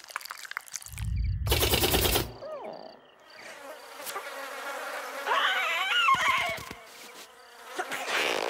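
Cartoon sound effects of a swarm of glowing fireflies buzzing, with a low thump and rush of noise about a second in and a wavering, squeaky sound a little past halfway.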